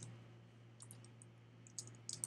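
Faint computer keyboard keystrokes, a few scattered single clicks, over a low steady hum.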